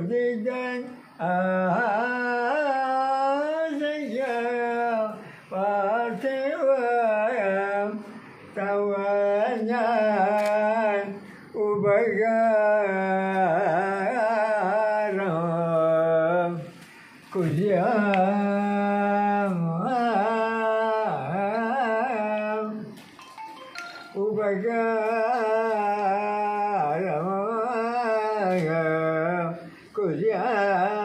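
An elderly man singing solo and unaccompanied into a handheld microphone: a slow melody of long held notes, bent and ornamented, sung in phrases broken by short pauses for breath.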